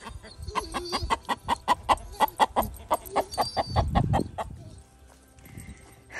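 A chicken clucking in a rapid, even series, about five clucks a second, for around four seconds before stopping, with a dull low thump near the end of the run.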